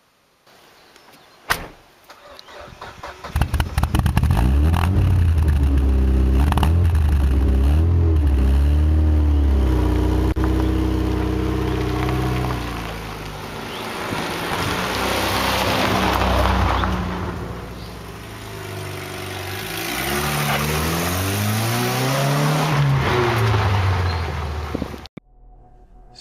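The Nissan Pulsar's swapped-in CA18 1.8-litre twin-cam four-cylinder engine starts about three seconds in and runs loudly, its pitch rising and falling as it is revved and driven. It swells twice, around the middle and near the end, and cuts off suddenly shortly before the end. There is a single sharp click about a second and a half in.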